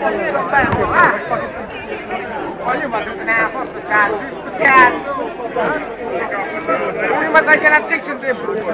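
A group of men chatting, several voices overlapping at once.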